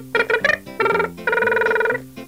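A short melodic phrase on a musical instrument: a few quick notes, then one held note near the end, over a quiet background music bed.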